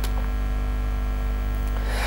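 Steady electrical mains hum, a low buzz with a stack of even overtones, holding at one level with nothing else over it.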